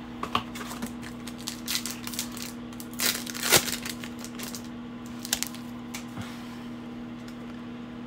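Panini Optic foil trading-card pack crinkling and cards clicking against each other as the pack is opened and the cards are handled: a run of short crackles, busiest about three seconds in and dying away near the end, over a steady low hum.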